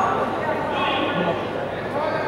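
Indistinct voices and chatter echoing in a large sports hall.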